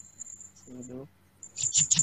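A faint, high, thin chirping trill like an insect's, coming over a video call, followed near the end by a quick run of sharp clicks.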